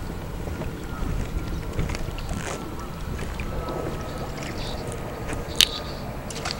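Steady low rumble of wind buffeting the microphone over open water, with a few faint ticks and one sharp click near the end.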